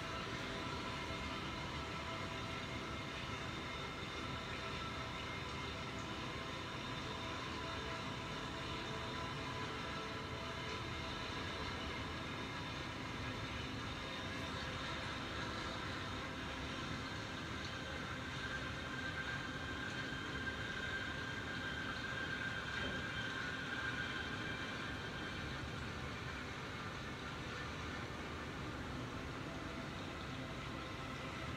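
A steady mechanical drone and hiss with several faint, steady high whines. It is slightly louder for a few seconds about two-thirds of the way through.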